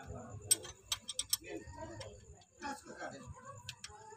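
Sharp metallic clicks of hand tools working the rocker-arm valve adjusters of a Toyota 5K engine during valve clearance adjustment. There is one click about half a second in, a quick run of clicks around one second, and two more near the end.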